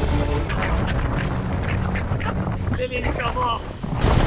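Yamaha 200 outboard motor running at speed on a speedboat, with wind buffeting the microphone and the wake rushing. Brief shrill voices near the end.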